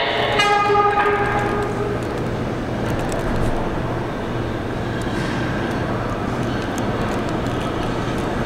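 An R211A subway train gives a short horn blast, under a second long, as it comes into the station, followed by the steady rumble of the train approaching through the tunnel.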